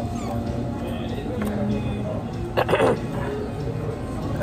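Restaurant background noise with music playing, and a brief high voice-like sound about two and a half seconds in.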